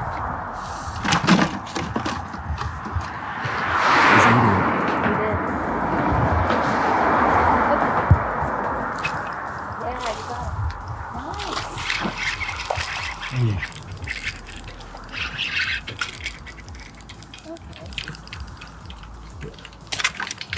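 Road traffic passing over a bridge: a rushing noise that swells and fades as a vehicle goes by about four seconds in, and again a few seconds later.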